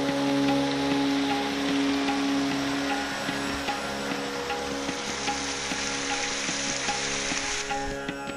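Small waterfall spilling over rock ledges into a pool, a steady rushing hiss of falling and splashing water that cuts off suddenly near the end. Ambient background music with sustained drone notes plays under it throughout.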